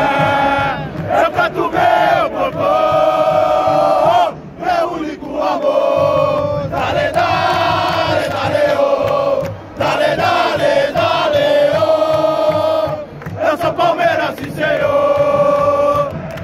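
A large crowd of Palmeiras football supporters chanting in unison at close range. They sing long held phrases broken by short pauses.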